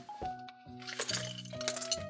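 Soft background music with held notes, over the crinkle of a plastic blind-bag packet and small plastic Lego minifigure pieces clicking together as they are tipped into a hand, with a cluster of clicks about a second in and again near the end.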